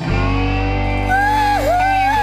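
Slow blues band music: after a short break the band comes back in with a steady bass, and about a second in a high lead line enters, bending and sliding in pitch.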